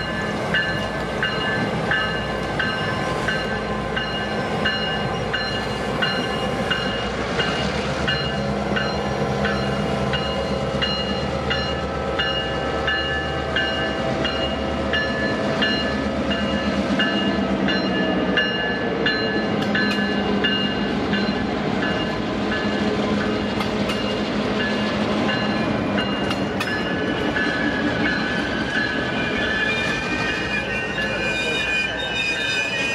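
Two EMD F-unit diesel locomotives pass close by with a steady low engine drone, followed by the train's cars rolling over the rails. A bell rings in steady, evenly spaced strokes the whole time, and a high squeal rises near the end.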